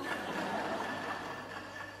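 Soft, scattered audience laughter and murmuring in a large hall, low and fading slightly.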